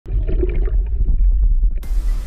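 Loud, muffled underwater rumble and bubbling, heard through a camera beneath the surface, with a deep steady rumble. Near the end the sound changes abruptly and turns brighter and hissier.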